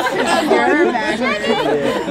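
Group chatter: several young women's voices talking over one another at once.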